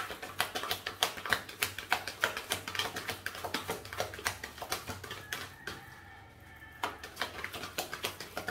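A deck of oracle cards being shuffled by hand: a quick run of light card-on-card clicks and slaps, several a second, pausing briefly about three-quarters of the way through before starting again.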